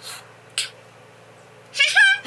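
Mostly a lull, with a short hiss about half a second in. Near the end a girl's voice starts up again in high, gliding sounds, garbled by a cheek retractor holding her mouth wide open.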